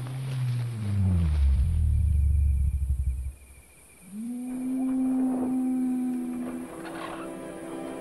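A deep, drawn-out animal moan from the Diplodocus, a dramatised dinosaur call, sliding down in pitch over about three seconds. After a short pause, music comes in with a long held note.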